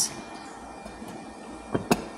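Low, steady background noise with a faint high steady tone, and two quick clicks close together near the end.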